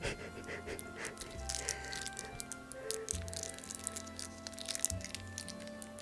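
Quiet background music of held notes, with faint scattered clicks and crinkles from a plastic sauce packet being squeezed over a foam food box.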